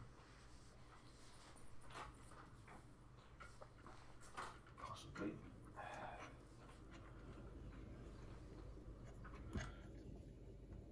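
Faint handling noises: scattered light clicks and short rustles as a radio transceiver's detached plastic front panel and its ribbon cables are moved about, with a sharper click near the end, over a low steady hum.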